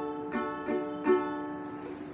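Ukulele strummed: three quick down-strums on one chord, about a third of a second apart, the last the loudest. The chord then rings on and fades.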